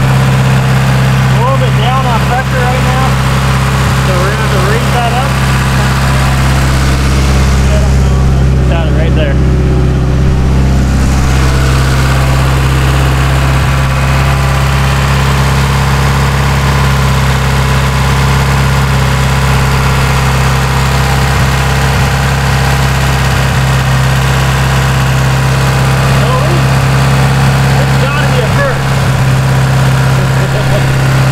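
Mitsubishi Lancer Evolution VIII's turbocharged 4G63 inline-four idling steadily on its newly installed fuel system, while its fuel pressure regulator is set at idle.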